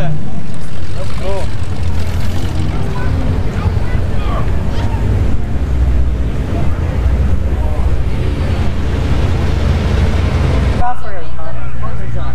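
Wind buffeting the microphone of a handheld camera outdoors: a loud, uneven low rumble that starts abruptly and jumps again near the end, with faint voices underneath.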